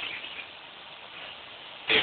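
Faint steady hiss of broadcast audio between words of commentary, with no distinct sound in it.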